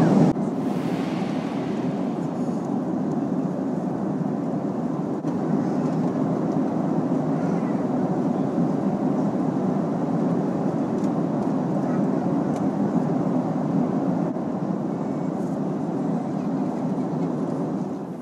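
Steady cabin noise of a jet airliner in cruise flight: an even rush of engine and airflow noise heard from inside the cabin, cutting off at the end.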